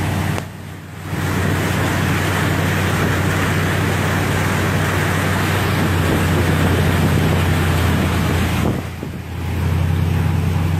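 A truck driving through deep floodwater: a steady low engine drone under the rushing, splashing wash of water pushed off the side of the vehicle. The sound drops briefly twice, about half a second in and near the end.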